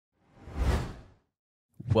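A whoosh sound effect for an animated title transition, swelling and then fading away within about a second. A narrator's voice starts just before the end.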